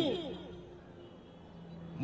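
A pause in a man's speech into a microphone: his last word trails off in the first moments, then only a faint, steady low hum remains until he speaks again.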